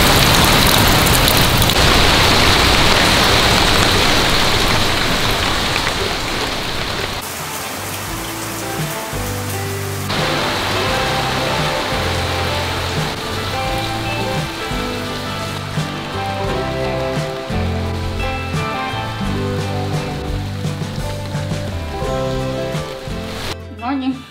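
Heavy rain falling, loud and steady, with water running off onto wet ground. About seven seconds in, background music with held notes and a bass line comes in over the rain, which goes on more faintly beneath it.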